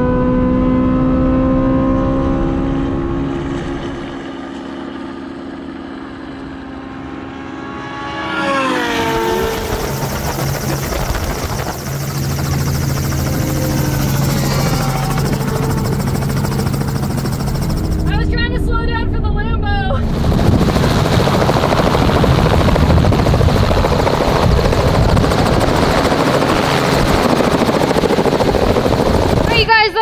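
Supercar engines in a drag race: an engine note that climbs slowly in pitch over the first few seconds, a sharp rise about eight seconds in, then a long, loud rushing stretch of engine and wind noise.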